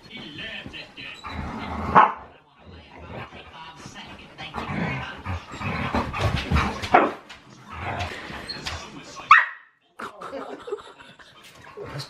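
Dogs barking and yipping in play, with a few sharp barks standing out about two seconds in, around seven seconds and just after nine seconds.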